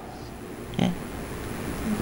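A pause in a man's talk: steady low room noise, with one short questioning "eh?" from him a little under a second in.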